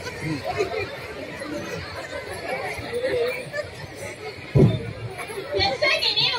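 Kannada speech with background chatter, and a single dull thump about three-quarters of the way through.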